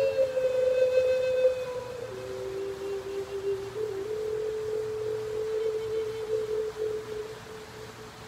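Native American flute playing a slow melody of long held notes. The pitch drops to a lower note about two seconds in, climbs back about four seconds in, and the last note is held with a slight waver before fading near the end.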